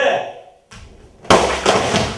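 A taekwondo board break. About a second and a half in, a board held up by the coach is struck and breaks with a sudden loud crack, followed by about a second of noisy burst that may include a shout. A short voiced sound comes at the start and a brief knock just before the break.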